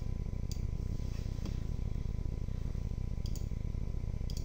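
A few light clicks from a computer input device as drawing software is worked: one about half a second in, one near the middle, and two close together about three seconds in. A steady low hum runs underneath.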